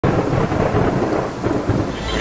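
Rain with a low rumble of thunder, a steady hiss over a rolling rumble.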